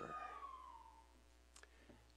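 Near silence with a low steady hum. A faint whistle-like tone slides down in pitch over about the first second, and there is a single soft click near the end.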